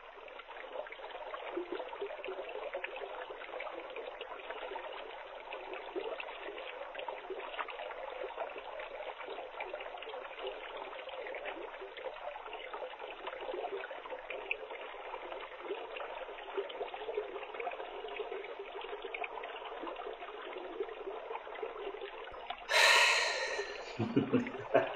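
Swimming-pool water lapping and splashing steadily, a muffled, band-limited wash full of small irregular splashes. About a second before the end, a louder, brighter burst of sound lasting about a second.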